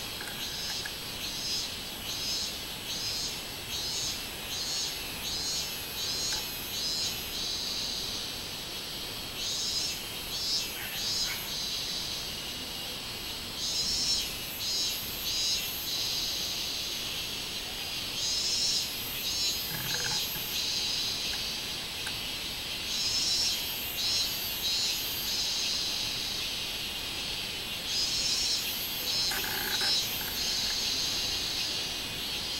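Minmin-zemi cicadas (Hyalessa maculaticollis) singing: bouts of rapidly repeated pulsed calls that rise out of a steady high buzz and die back every few seconds.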